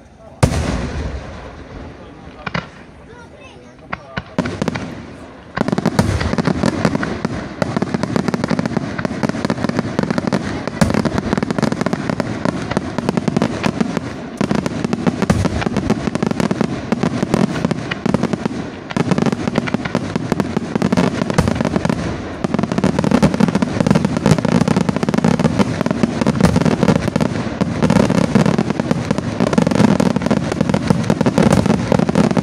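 Aerial firework shells bursting: one loud boom about half a second in and a few scattered reports over the next few seconds, then from about five seconds in a dense, continuous barrage of overlapping bursts.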